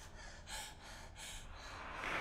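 A person gasping and panting in short, quick breaths, about three a second.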